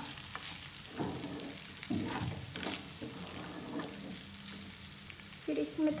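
Wooden spatula stirring vermicelli in a nonstick kadai, with irregular soft scrapes and knocks against the pan.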